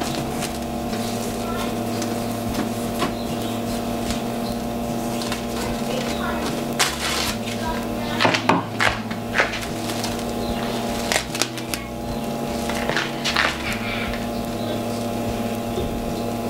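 Plastic cling film crinkling and crackling in short scattered bursts of noise as it is pulled and stretched over a brewing kettle, over a steady electrical hum from the brewing system.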